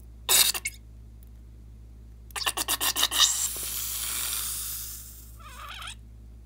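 Scissors snip through the rubber tip of a slime-filled balloon, a short sharp cut. About two seconds later the slime is squeezed out of the balloon: a run of rapid crackles followed by a hissing rush that fades out, with a few smaller crackles near the end.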